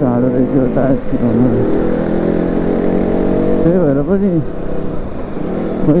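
KTM Duke 200's single-cylinder four-stroke engine running at steady revs while the bike is ridden through traffic.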